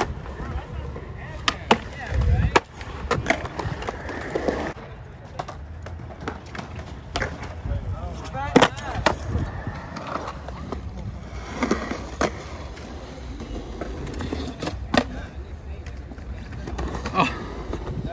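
Skateboards on concrete: wheels rolling, with a series of sharp clacks as boards are popped, hit the ground and land.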